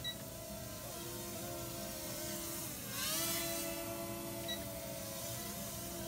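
Toy quadcopter drone's small motors and propellers whining steadily in flight. About halfway through, the pitch dips, then rises and gets louder as the throttle changes.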